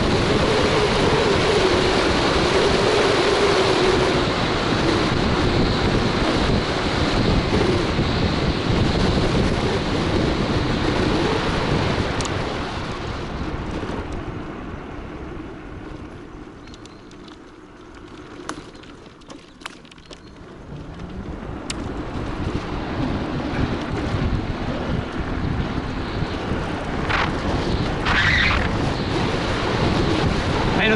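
Wind buffeting the microphone, with road rush from an electric scooter riding fast on asphalt. The noise dies down as the scooter slows about halfway through and builds again as it speeds back up.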